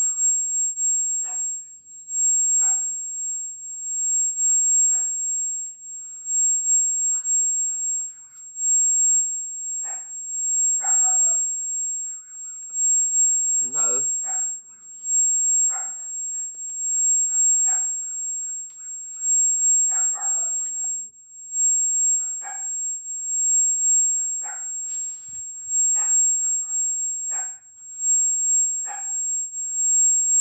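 Short voice-like calls repeating every second or two, over a steady high-pitched whine.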